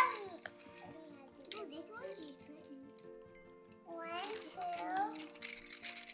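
Soft background music with held notes, with a child's voice about four seconds in and a few faint clicks of wooden colored pencils being picked from a pile.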